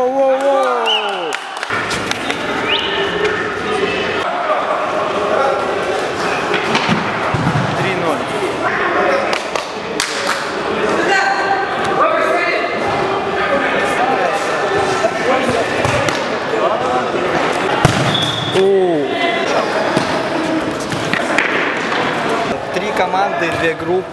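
Indoor mini-football game in a sports hall: players shouting and calling to each other over the thuds of the ball being kicked, all echoing in the hall.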